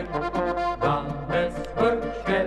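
Slovenian Oberkrainer-style folk band music on a 1970s LP recording: accordion and brass playing together over a regular beat of about two pulses a second.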